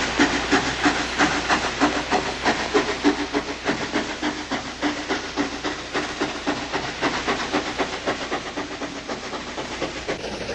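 Steam locomotive running at speed: a fast, even beat of exhaust chuffs with hiss, about four a second, slowly fading as the train draws away.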